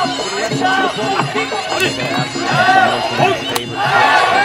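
Muay Thai sarama ring music: a reedy Thai oboe (pi java) wailing in rising and falling phrases over a steady, repeating drum beat.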